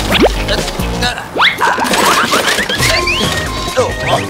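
Cartoon background music with comic sound effects: quick sliding whistle-like glides, short knocks and a rising run of stepped tones about three seconds in.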